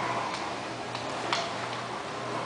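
A few light clicks of a kitten's claws on a hardwood floor as she scampers about, the sharpest about a second and a half in.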